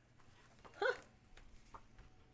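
A single short vocal call about a second in, pitched higher than the woman's speaking voice, followed by a few faint handling clicks.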